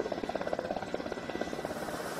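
Air Force helicopter's rotor beating in a rapid, even chop.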